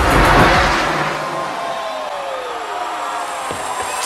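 A stage smoke jet blasting: a sudden loud hiss that fades away over about a second and a half. The dance music's bass drops out after it, and a tone glides down in pitch.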